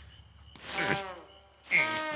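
Two short, squeaky, buzzy cartoon whimpers, each falling in pitch, about a second apart; the second is louder.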